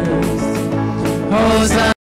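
Live church worship band playing and singing, voices holding long sustained notes over the band. The sound cuts out completely for a moment at the very end.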